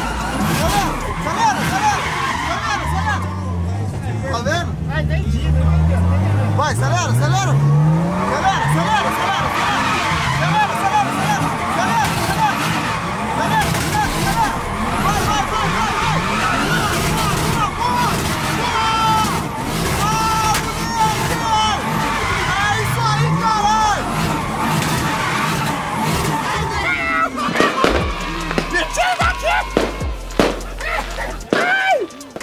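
Drift car's forged 1JZ engine revving hard in repeated rising surges, with tyres squealing continuously as the car spins donuts, heard from inside the cabin.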